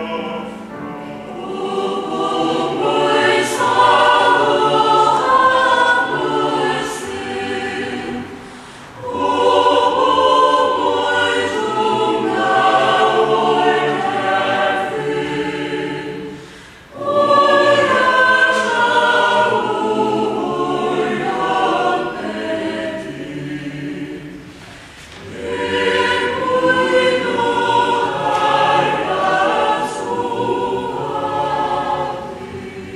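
Mixed chamber choir singing a hymn in long phrases, with a short break for breath about every eight seconds.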